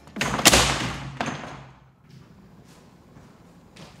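A backpack being handled: a sudden thump with a swishing rustle about half a second in that fades over about a second, a smaller knock just after, then a few faint soft knocks.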